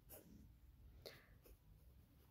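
Faint scratching of a ballpoint pen writing on notebook paper, in a few short strokes.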